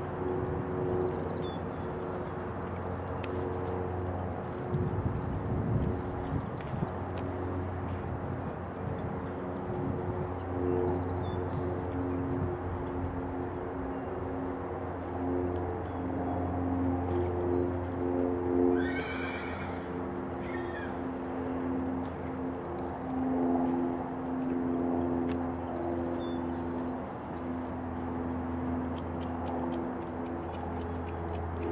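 A horse whinnies once, about two-thirds of the way through, with a shorter call just after. Under it runs a steady low hum with scattered light clicks.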